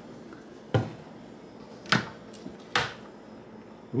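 Kitchen wall-cabinet doors being opened and shut by hand: three sharp clicks and knocks, roughly a second apart.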